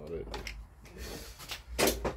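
A man's brief voice sound, then quiet handling noises over a steady low hum.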